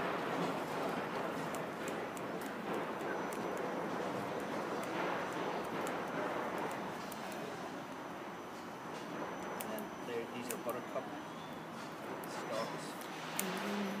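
Small scissors snipping and rustling through short grass and leaf litter, irregular little clicks over a steady background hiss. Faint voices come in near the end.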